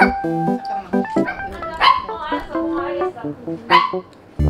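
A poodle barking twice, about two seconds apart, over background music.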